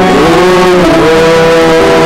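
A singing voice over guitar accompaniment in a sung responsorial psalm, with held notes and a slide in pitch in the first second.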